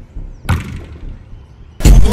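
Football kicks: one sharp thump about half a second in, then a louder hit near the end as music starts.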